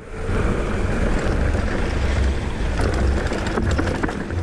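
Wind rushing over an action camera's microphone as a mountain bike rolls along the trail, a steady deep rumble that cuts in abruptly just after the start.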